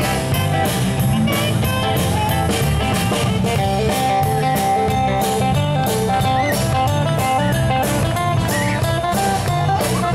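Live band playing an instrumental passage without vocals: acoustic guitars strumming over electric bass and a steady drum-kit beat, with a saxophone at the start carrying long held melody notes.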